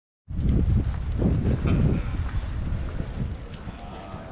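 City street noise: a low, uneven rumble of traffic and air on the microphone, loudest in the first two seconds and then easing, with faint voices in the background.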